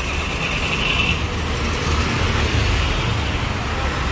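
Road traffic passing, with a bus going by: a steady rumble of engines and tyres. A thin high whine sounds for about the first second.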